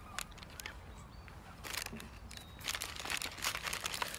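Small paper bag crinkling and rustling as it is handled and opened, in several short bursts, the busiest stretch in the second half.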